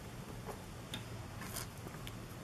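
A few faint light ticks and one short rustle, about one and a half seconds in, from hands handling a leather traveler's notebook and its paper inserts, over a low steady hum.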